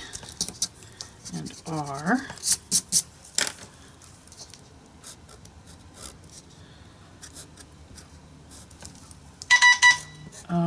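Light clicks and scratches from marker and paper handling, with a brief murmured voice about two seconds in. Near the end a short run of loud electronic alert beeps sets in, pulsing quickly at one steady pitch.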